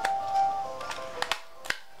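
Handheld stapler being squeezed shut through several layers of printer paper, giving a few sharp clicks about a second in and near the end. Faint steady background music tones fade out in the first second.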